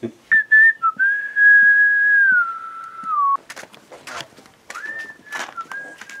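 A person whistling a short phrase: a few quick notes, then a long held note that slides down to a lower one. The phrase starts again near the end. Several sharp clicks or knocks come in the pause between the two phrases.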